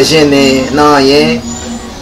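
A man speaking, his voice drawn out over the first second or so, then a short quieter stretch near the end.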